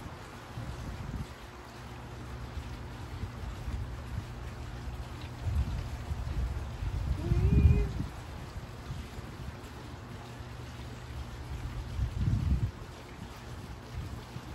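Steady low hum with a few short low rumbles, and a brief voiced exhale from the exerciser about halfway through.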